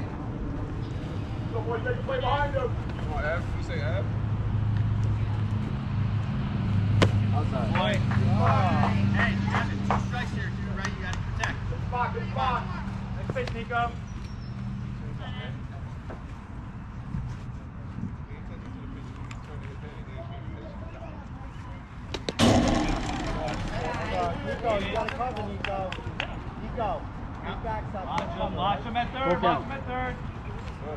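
Youth baseball game sounds: distant shouting voices of players and spectators, with a low steady hum for several seconds near the start. About 22 seconds in, a sharp crack of a bat hitting the ball, the loudest sound, followed by louder shouting.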